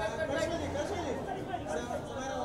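Overlapping chatter of several voices talking at once.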